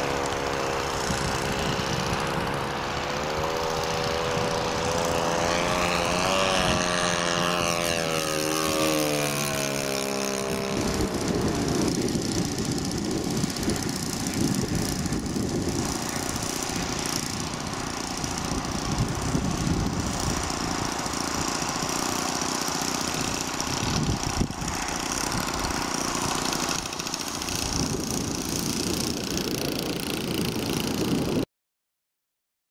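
A large radio-controlled Spitfire model's engine and propeller during a pass, the pitch rising and then falling in the first ten seconds or so. About eleven seconds in the engine drops to a lower, rougher, steady sound, throttled back for the approach and landing.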